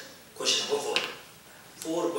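Speech only: a man talking in Telugu. A short phrase starts abruptly about half a second in, there is a brief pause, and talk resumes near the end.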